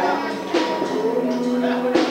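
Live small-band music: acoustic guitar and a drum kit, with long held notes carrying through and a drum hit about half a second in.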